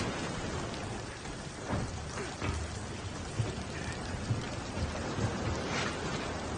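Heavy rain and storm noise, a steady hiss with a few low rumbles through it.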